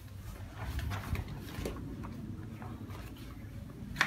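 Footsteps on wooden stairs, soft knocks about every half second, over a low steady rumble.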